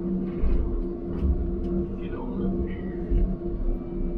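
Diesel engine of a John Deere logging machine running steadily, heard inside its cab as an even drone with a low rumble underneath.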